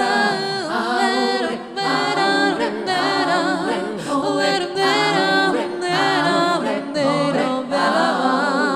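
Multi-tracked female voice singing sustained choir-like harmonies with vibrato, several vocal lines layered at once.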